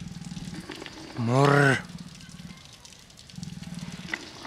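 A person's voice: one short drawn-out vocal sound about a second in, over a low rumble.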